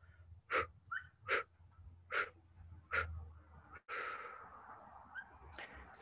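A woman exhaling in 'bump breathing', the out-breath of 4-7-8 breathing: short puffs of breath pushed through pinched lips, about four of them under a second apart, then a longer breath out that fades away.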